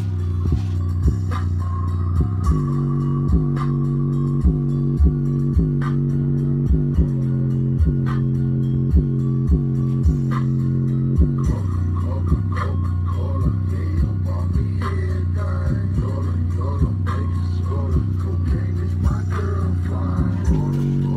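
JBL Charge 2+ portable Bluetooth speaker playing bass-heavy music at high volume, its end passive radiator pumping. Long deep bass notes hold steady under a sharp beat that hits about once a second.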